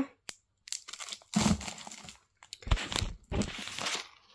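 Plastic snack packets crinkling and rustling as they are handled, in two bursts: one about a second and a half in, a longer one from just under three seconds in, with a few low knocks.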